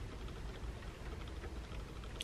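Rain falling on a parked car, heard from inside the cabin as a faint, steady hiss.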